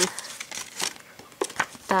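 Paper leaflet crinkling and rustling in several short crackles as it is handled and unfolded by hand.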